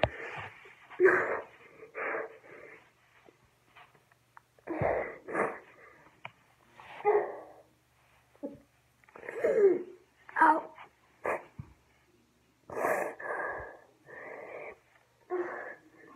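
A person's faked crying: a string of short sobs and whimpers, about one a second, with silent gaps between them, put on to sound hurt after a staged fall.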